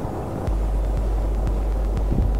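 A low, steady rumbling drone that comes in about half a second in, over a rough hiss.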